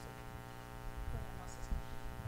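Steady electrical mains hum in the microphone and sound-system audio: a low, even buzz with many evenly spaced overtones.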